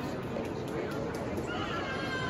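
Murmur of many visitors' voices echoing in a large domed hall, with a few faint clicks in the middle. Near the end a high, drawn-out voice-like call starts and slowly falls in pitch.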